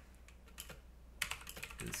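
Computer keyboard typing: a few scattered keystrokes, then a quick run of keys from a little past halfway.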